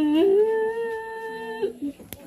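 A woman's long grieving wail: her voice rises, holds one high pitch for about a second and a half, then drops lower and breaks off.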